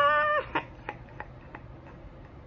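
A woman's high-pitched, drawn-out "ah!" exclamation lasting about half a second, followed by a few faint clicks over quiet room tone.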